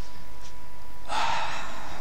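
A man's single breathy exhale, unvoiced and lasting under a second, about a second in, over a faint steady electrical tone.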